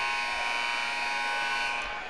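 Arena scoreboard horn giving a steady electric buzz that stops just before the end, the signal for a substitution at the free-throw break.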